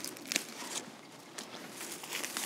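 Faint rustling of dry, cut clematis stems and leaves being gathered by hand, with a few light snaps or clicks.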